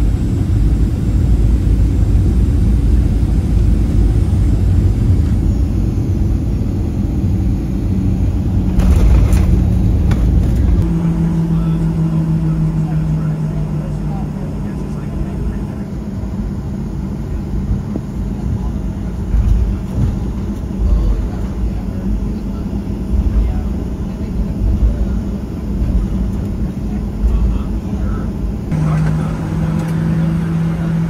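Airliner cabin noise on arrival: a heavy low rumble through the landing rollout for about the first ten seconds, with a brief knock near nine seconds in. After that it drops to a quieter, steady engine hum with small bumps as the jet taxis.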